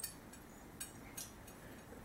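A few faint, scattered clicks from oil paint being mixed on a palette, in an otherwise quiet room.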